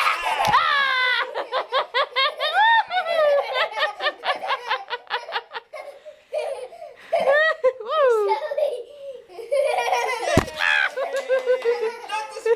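A young girl laughing hard in long runs of rapid, high-pitched pulses, breaking off for short pauses, with a single thump about ten seconds in.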